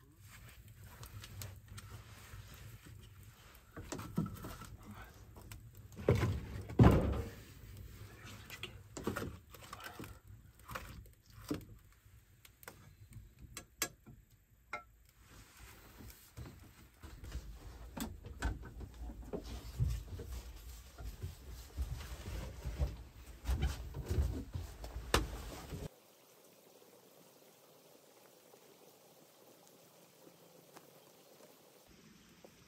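Irregular knocks and clunks as split firewood is loaded into the open firebox of a brick stove, with more handling noise in a small wooden room. The sound cuts to near silence about four seconds before the end.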